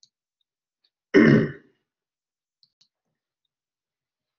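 A person clearing their throat once, a short burst lasting about half a second, about a second in.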